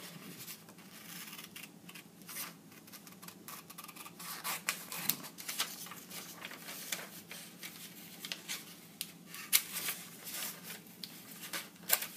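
Scissors cutting paper in big chunky cuts: a run of irregular crisp snips, the sharpest about nine and a half seconds in, with the sheet rustling as it is turned.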